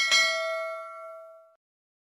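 Notification-bell sound effect: one bright ding that rings on in several tones and dies away about a second and a half in.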